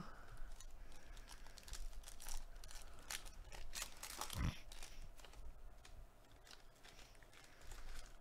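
Foil trading-card pack torn open and crinkled by gloved hands: a run of small crackles, quieter towards the end, with a dull thump about four and a half seconds in.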